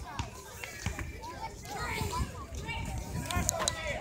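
Several people talking, with a few sharp knocks scattered through.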